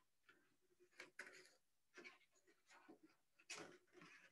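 Faint scissor snips cutting stiff black paper: a few short, quiet clicks spaced roughly half a second to a second apart.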